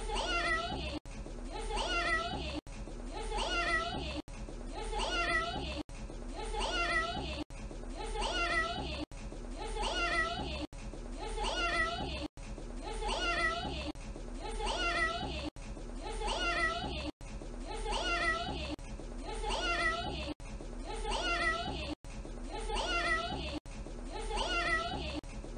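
A young boy saying "meow" in imitation of a cat. The same short clip repeats over and over, one meow about every 1.6 seconds, with a brief dropout at each join.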